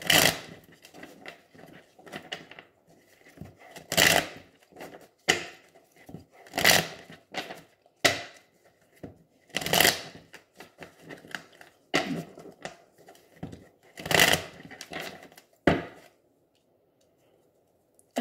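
A deck of Oracle Gé cards being shuffled by hand, in a run of short rustling bursts about every second or two, stopping near the end.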